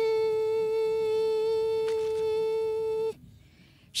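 A woman's voice holding one long, steady hummed note into the microphone, which cuts off abruptly about three seconds in.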